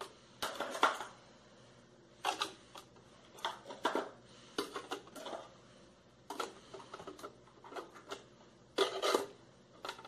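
Chocolate-lined wafer cones being set one after another into the holes of a plastic cake-plate stand: a series of light taps and clicks, about a dozen, the loudest near the end.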